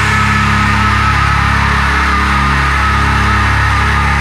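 Heavy rock music: distorted electric guitars and bass holding one sustained chord that rings on steadily, with no drumbeat under it.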